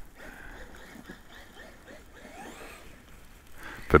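Traxxas MAXX V2 Wide RC monster truck's brushless electric motor whining faintly as the truck drives over snow, its pitch rising and falling.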